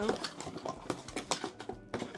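Handling sounds as things are packed back into a box by hand: a quick, irregular run of small taps, clicks and rustles.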